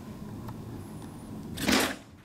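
A page of a large picture book being turned: one brief paper swish about one and a half seconds in, over a low steady room hum.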